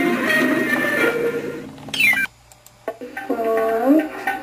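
Nick Jr. logo jingle music played through a television. About halfway through it ends in a quick sweeping glide and cuts off, and after a short quieter gap, pitched gliding tones begin.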